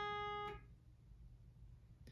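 A single sustained note from a Rittenberry pedal steel guitar's third string, fading, then cut off abruptly about half a second in as it is pick-blocked by the back of the middle finger. After that only a faint low hum remains.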